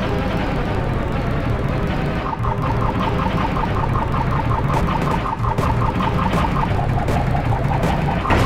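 Dense mash of overlapping audio tracks, music and sound effects layered together, with a rapid high-pitched pulse repeating about four times a second through the middle.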